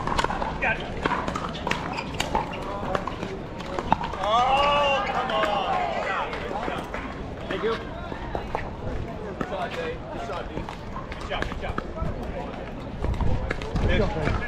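Sharp pocks of pickleball paddles hitting a plastic ball in a rally, with more pops from neighbouring courts throughout. About four seconds in a voice gives a drawn-out call, with background chatter around it.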